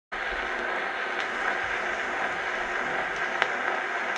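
Surface noise of an Edison Diamond Disc turning under the reproducer's stylus in the lead-in groove, played acoustically on a console Edison phonograph with a True Tone diaphragm and Bruce stylus: a steady hiss with a few faint clicks, before the music begins.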